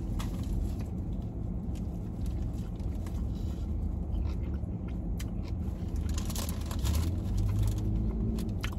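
A man biting and chewing an Italian beef sandwich, with small crackles of its paper wrapper, more of them about five to seven seconds in, over a steady low rumble in the car cabin.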